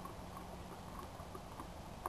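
Hand pump sprayer being pumped up to pressurize it: faint short squeaks and clicks from the pump handle and plunger, several a second.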